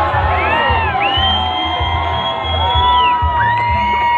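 Live band music over a PA system, with long held melody notes that bend at their starts and ends above a pulsing bass line, and crowd noise underneath.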